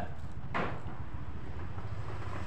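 A steady low mechanical hum in the background, with a brief whoosh about half a second in.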